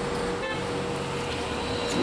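Steady background noise in a café, with a constant hum and a brief click about half a second in.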